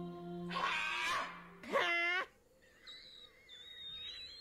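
Two short animal calls, the second a louder, clearly pitched yelp about two seconds in, followed by a faint high steady tone.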